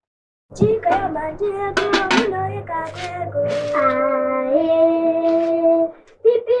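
Young girls' voices singing a playful children's song, starting about half a second in and ending on long held notes.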